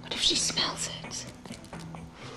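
A hand-rolled joint being lit: a sharp strike about a quarter second in, then breathy puffing and faint crackling as it is drawn on, fading after the first second.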